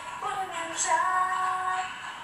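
A teenage girl singing, drawing out the word "I'm" on a long held note that slides in and then holds steady.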